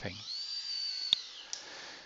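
Servo motor and gearing of the InMoov robot's 3D-printed bicep whining as it drives the arm up to its maximum: a high whine that rises at the start, holds steady, then drops away after about a second, with a sharp click partway through.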